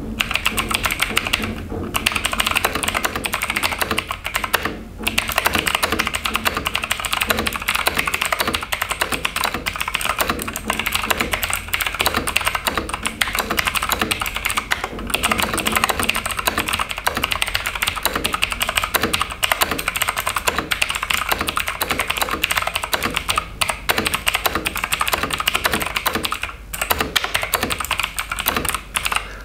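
Fmouse K902 tenkeyless mechanical keyboard with clicky blue switches being typed on fast and continuously: a dense stream of sharp key clicks, broken by a few short pauses.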